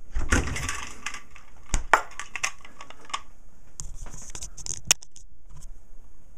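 Freezer door pulled open with a metal spring-balance hook: a thump, rattles and sharp clicks as the magnetic seal lets go and the hook and scale jostle. The clicks come near two seconds and again about five seconds in. The seal holds harder than usual because the air let in has chilled and contracted inside the freezer.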